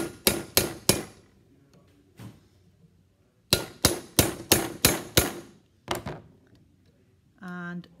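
Ball-peen hammer tapping a rivet snap held on a rivet, forming the rivet's domed snap head. The sharp metallic strikes come in groups: about four quick taps at the start, then six taps about three a second a few seconds in, and a last one after a pause.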